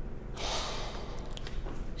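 A man's long, heavy breath out, starting about half a second in and lasting over a second, during a tense pause in an argument.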